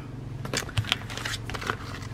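Clear plastic sticker sheets of number dots rustling as they are handled and laid down, with a few light ticks.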